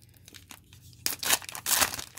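Foil wrapper of a 2019 Donruss Optic football card pack being torn open and crinkled by hand: quiet at first, then two loud bursts of tearing and crinkling in the second half.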